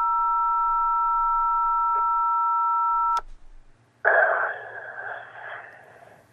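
Telephone keypad button held down, sending a steady two-note touch-tone (DTMF) into the line; it cuts off suddenly about three seconds in. About a second later comes a burst of noisy, crackly sound lasting about a second and a half.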